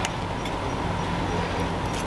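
A steady low mechanical hum, like a motor or engine running, with a single light click at the start.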